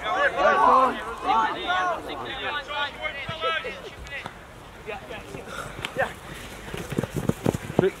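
Shouted calls from several voices across an open sports field in the first few seconds, then quieter field ambience, with a few short dull thumps near the end.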